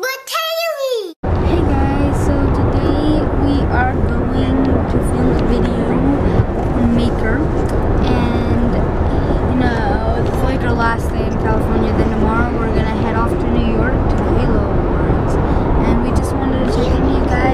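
A short intro jingle ends about a second in, then steady road and engine noise inside a moving car's cabin, with a boy's voice talking over it.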